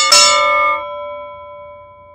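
A boxing ring bell struck in a quick run of strikes, the last one just after the start, then ringing on and fading away over about two seconds.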